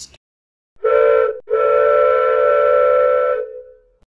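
A whistle-like steady chord sounding twice: a short blast, then a longer one that fades out near the end.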